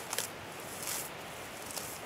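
Tall grass being pulled up by hand from around a young tree: short rustling, tearing bursts of the stalks, three of them about a second apart.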